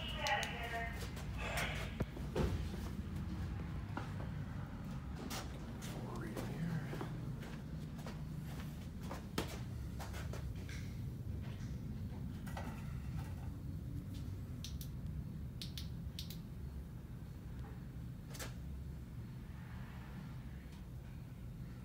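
Scattered metallic clicks and knocks of hydraulic fittings and tools being handled while the hoses are connected to a hydraulic axle-bending rig, over a steady low shop hum.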